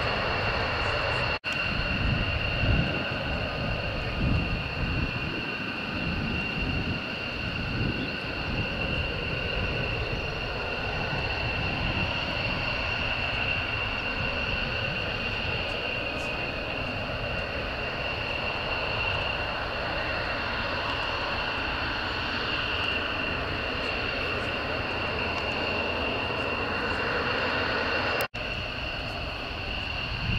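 F-15 fighter jet engines running at ground idle, a steady high-pitched whine over a low rumble. The rumble is heavier in the first few seconds, and the sound drops out briefly twice, about a second and a half in and near the end.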